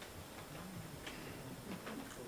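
Quiet room sound with a few faint, soft clicks and a low murmur of voices away from the microphone.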